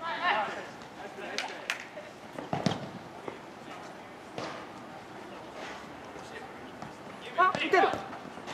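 Futsal play on an outdoor court: players' calls in the background, sharp knocks of the ball being kicked, and a short burst of shouting near the end.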